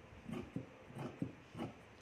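Large dressmaker's shears cutting through fabric on a table in short, separate snips, about five in two seconds.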